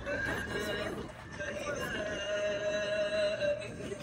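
A person's voice making drawn-out, held sounds rather than words: a short one near the start, then one long held tone of about a second and a half in the second half.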